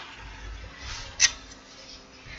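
Quiet room tone with a faint low rumble and one brief, sharp hiss a little over a second in.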